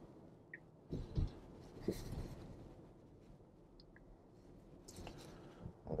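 Faint road and tyre noise inside a Tesla's quiet electric-car cabin while driving, with a few soft knocks about one and two seconds in.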